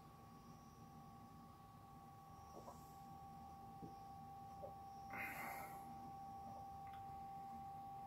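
Near silence: a faint steady high-pitched tone in the room, with a few tiny clicks and one short soft breath about five seconds in as a sip of lager is tasted.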